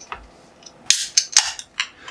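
Ring-pull of a beer can snapped open: a sharp crack about a second in with a brief hiss, then a few small clicks.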